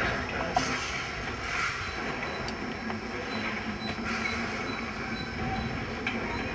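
Steam locomotive running as it approaches, heard from down the line as a steady low rumble with a few faint clicks.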